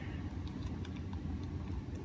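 Steady low rumble in the background, with a few faint clicks.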